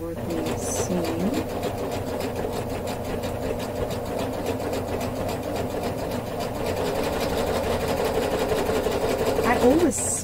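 Serger running a coverhem stitch along the hem of a knit top: a fast, even run of stitches held at a steady speed.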